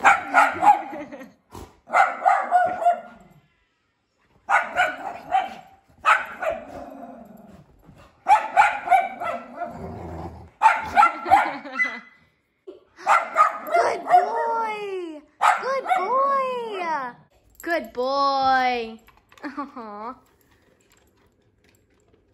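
Dog vocalizing in a string of short bursts, barks and growl-like grumbles at first. From about halfway in come high, pitched calls that rise and then fall, like whining or howling.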